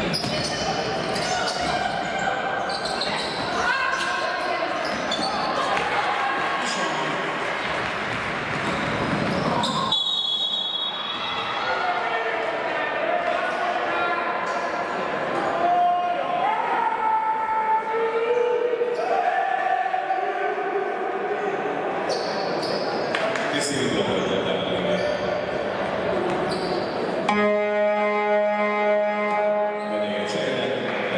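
Basketball game sounds in a large hall: the ball bouncing and players calling out, with a referee's whistle about ten seconds in. A steady buzzer sounds for about three seconds near the end.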